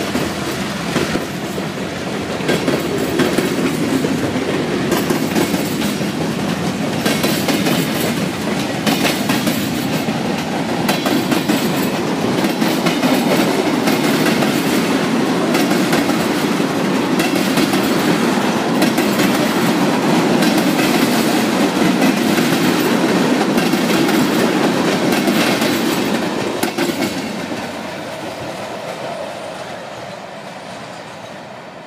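Freight cars of a Norfolk Southern local rolling past close by, steel wheels clacking in an uneven run over the rails. The sound drops away over the last few seconds as the end of the train passes.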